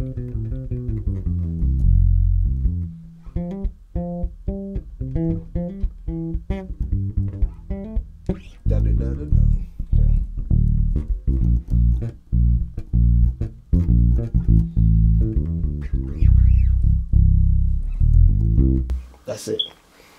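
Electric bass guitar playing a melodic line of short plucked notes, quick runs at first and then fuller sustained low notes, stopping shortly before the end.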